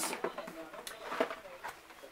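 Paperboard gift box being opened by hand, its lid slid off with a few soft scrapes and taps.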